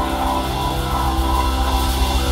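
Live rock band playing an instrumental passage with no vocals: electric guitar, bass guitar, drum kit and keyboard together.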